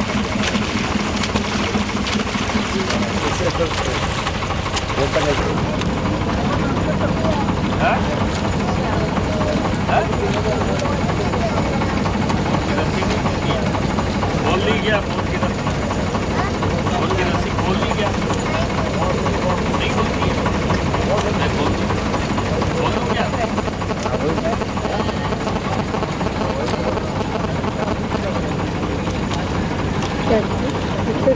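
A boat's motor running steadily, with indistinct voices over it.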